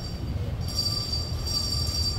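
A steady high-pitched squeal that grows louder about half a second in and holds, over a low street rumble.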